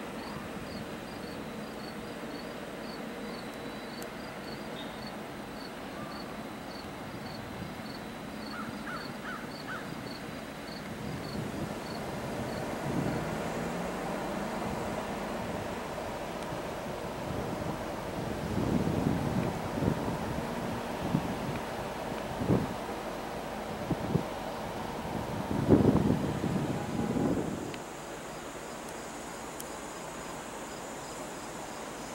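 Outdoor ambience with insects chirping steadily at a high pitch, about two or three chirps a second. In the second half, gusts of wind buffet the microphone, loudest near the end.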